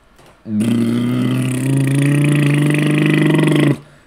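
A man making a long, low, drawn-out silly vocal noise with his tongue stuck out, held for about three seconds, with a small step up in pitch partway through.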